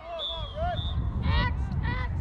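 Shouted calls across an outdoor lacrosse field. A short high steady tone comes near the start, then two loud harsh calls about a second and a half in, over a steady low rumble of wind on the microphone.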